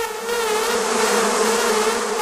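Electronic dance music in a breakdown with no kick drum: a held, buzzing synth note with wavering overtones over a wash of noise that swells through the middle.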